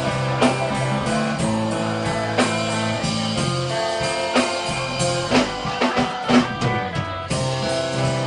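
Live punk rock band playing: electric guitar chords held over drums, with a quick run of drum hits in the second half.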